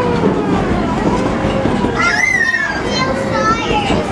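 Unclear chatter of passengers, children among them, over the steady low rumble of the moving train; a child's high-pitched call rises and falls about two seconds in.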